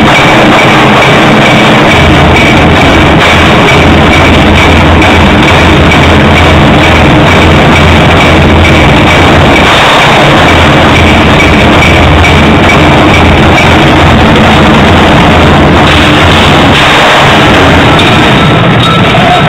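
Live orchestral music with a section of painted Chinese drums struck with sticks. It is recorded so loud that it is overloaded throughout.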